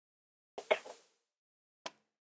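Mostly silence, broken about half a second in by one short, breathy vocal sound from a person, with a faint click near the end.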